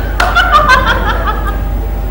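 A woman laughing, a quick run of short repeated pulses.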